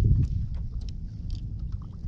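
Low rumble of wind buffeting the microphone, strongest at the start and easing off, with scattered light clicks and ticks from the fishing gear.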